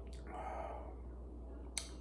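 Faint breath and mouth sounds of a man drinking beer from a glass mug: a soft breathy exhale in the first second, then a small sharp click near the end as the mug comes away from his lips.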